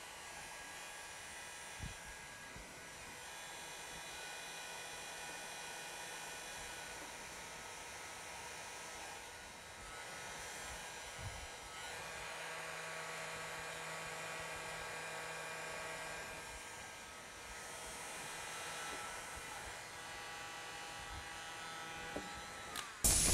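Faint, steady electric hum and whirr, like a small motor or fan, with a few soft knocks from handling the vinyl and squeegee against the car body.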